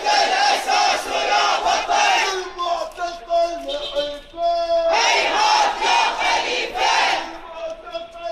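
Crowd of protest marchers chanting a slogan together in loud, rhythmic bursts. Between the full-crowd bursts, a few voices hold drawn-out notes.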